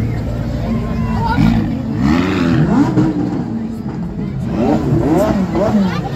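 Sports car engine running at low speed as the car rolls slowly past close by, with voices from the crowd rising over it in the middle and near the end.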